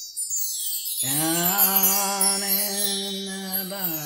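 A voice chanting one long held note: it slides up into the note about a second in and holds it steady for nearly three seconds. A high chiming shimmer runs underneath.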